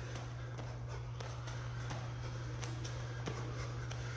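Steady low hum of room background, with faint scattered light taps of bare feet stepping on a gym mat during shadow boxing.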